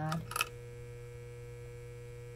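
A steady electrical hum, a low drone with a few fainter steady tones above it, following the last word of a woman's speech about half a second in.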